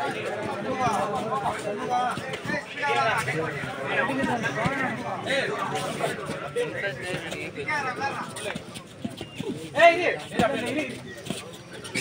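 Men's voices on a kabaddi court: players and spectators calling out in short, repeated shouts during a raid, with one louder shout about ten seconds in.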